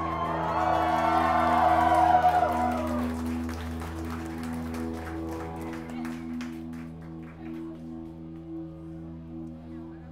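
The end of a live song played on electric guitars and keyboard: low notes held on as a steady drone, with a louder swell of wavering guitar tones in the first few seconds that fades away, then scattered claps as the piece dies out.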